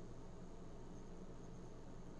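Faint steady low hum with a light hiss: room tone.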